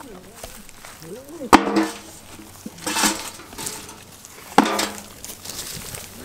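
Pumpkin chunks being picked up off the grass by hand and dropped into a container: two sharp knocks, each ringing briefly, about a second and a half in and again near the end.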